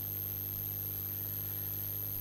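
Steady low electrical hum with faint hiss and a thin high whine: the constant background noise of the recording setup, with no other event.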